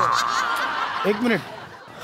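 Audience laughter, a burst of many voices laughing together that fades away after about a second.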